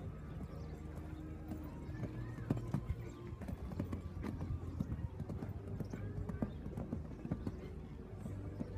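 Hoofbeats of a show-jumping horse cantering on a sand arena, a run of repeated thuds.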